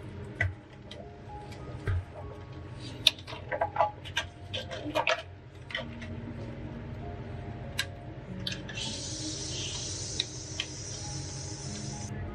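Clear plastic packaging being handled: a scatter of crinkles, clicks and taps over the first half, followed by a steady hiss for the last few seconds. Faint background music runs underneath.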